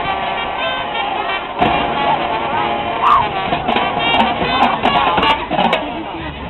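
Marching band playing on the field: brass and woodwinds holding sustained chords, with sharp drum and cymbal strikes from the percussion section.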